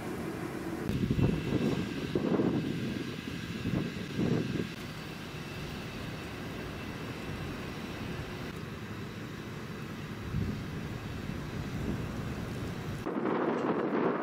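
Outdoor background noise with a steady hum. Low rumbling swells rise and fall in the first few seconds and once more about ten seconds in.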